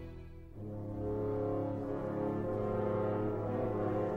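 Orchestral music of sustained brass chords. The sound dips briefly, and a new held chord comes in about half a second in.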